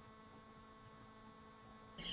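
Near silence: a faint, steady electrical hum under room tone.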